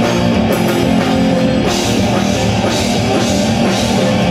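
Live rock band playing loud and steady on electric guitars, bass guitar and drum kit, an instrumental stretch with no vocal line.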